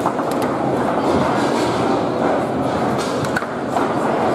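Table football play on a Leonhart table: the hard ball rolling and being struck by the plastic players on steel rods, with a few sharp clacks about half a second in and again near the three-second mark, over a steady hall background noise.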